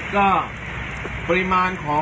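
Rain falling steadily and fairly heavily, an even hiss of noise.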